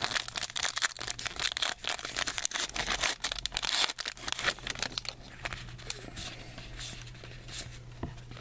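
A Topps Magic trading-card pack wrapper being torn open and crinkled by hand as the cards are pulled out. The crackling is densest for the first five seconds, then thins to lighter handling noise over a low steady hum.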